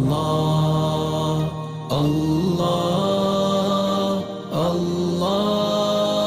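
Devotional Arabic chant (nasheed) as a backing track: a single voice holding long, drawn-out notes in phrases of about two seconds, with short breaks between phrases.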